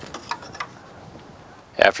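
A few faint clicks and light handling noise from a hand working around the plastic air-intake parts under the hood. A man's voice starts near the end.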